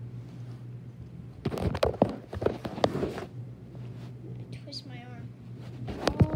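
Phone camera being handled and moved about: a cluster of knocks and rustles from about a second and a half in to past three seconds, over a steady low hum.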